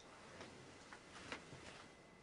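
Near silence with a few faint, short clicks about half a second apart, as a person stirs and gets up in a wooden bunk bed under a quilt.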